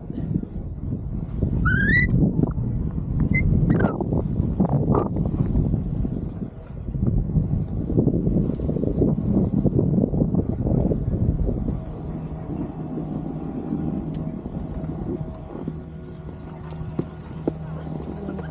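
Snowboard running and carving over groomed snow with wind rushing over the microphone, loud for about the first twelve seconds and then quieter. A few short, rising high squeaks come near the start.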